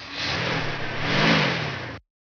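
Car driving: engine note climbing and then dropping, loudest a little past a second in, over a steady rush of noise. It cuts off abruptly at the end.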